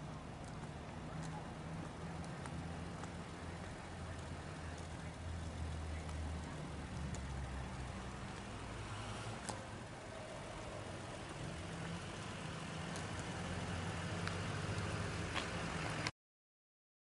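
A vehicle engine idling: a steady low hum over outdoor noise that grows somewhat louder near the end, with a few light ticks.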